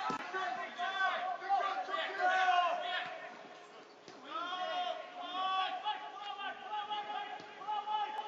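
Men's voices shouting and calling at a football match, several overlapping, with a brief lull about three to four seconds in.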